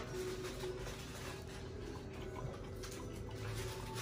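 A man chewing a mouthful of burger: faint, irregular mouth clicks over a steady low hum.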